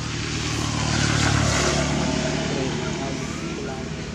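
Low engine hum of a passing motor vehicle, swelling about a second in and then slowly fading, with faint voices in the background.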